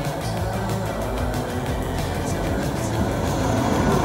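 A film's soundtrack playing over cinema speakers in the auditorium: music with a steady low rumble underneath.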